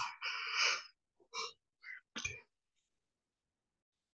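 A person breathing out hard close to a video-call microphone: one long breathy burst lasting about a second, then three short ones.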